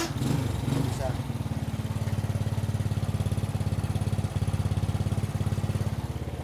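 Honda Supra Fit's small single-cylinder four-stroke engine idling with an even, rapid putter, just after catching on the electric starter. It is a little unsettled in the first second, then runs steadily.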